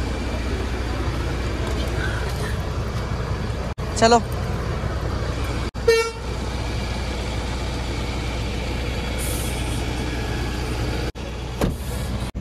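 Steady low rumble of vehicle engines and traffic, with a short horn toot about six seconds in.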